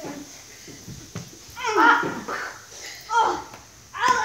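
Boys' shouts and yelps during rough play-wrestling: two short loud outbursts about two and three seconds in, with a couple of dull thumps about a second in.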